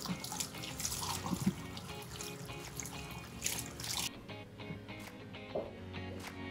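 Water from a salon shampoo-basin spray hose running and splashing over hair as it is rinsed. The water stops abruptly about four seconds in. Background music plays underneath.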